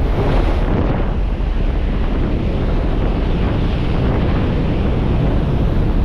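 Loud, steady rush of wind through the open door of a skydiving plane in flight, buffeting the microphone.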